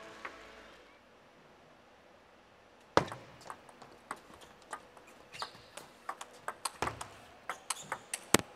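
Table tennis rally: the plastic ball clicks off the rackets and bounces on the table in quick, irregular succession. A single sharp, loud click comes about three seconds in, after a quiet start.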